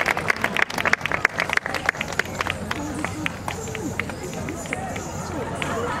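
Outdoor audience applauding, thinning out over the first few seconds to a few scattered claps, with crowd chatter underneath that takes over as the clapping dies away.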